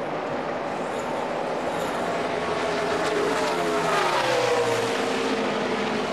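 A pack of NASCAR Nationwide Series stock cars' V8 engines running at racing speed. About halfway through, one engine note falls steadily in pitch over a couple of seconds.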